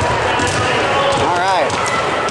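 Echoing gymnasium din of many people talking, with basketballs bouncing on the hardwood floor. A single voice calls out with a rise and fall in pitch about a second and a half in.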